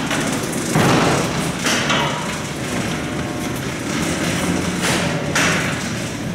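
Heavy doors and gate of an old Otis freight elevator working: a loud rattling clatter with several sharp knocks, about a second, two seconds and five seconds in.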